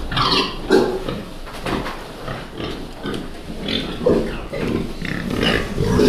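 A pen of large white fattening pigs, nearly 200 kg each, grunting repeatedly at close range. They are stirred up by a person moving among them.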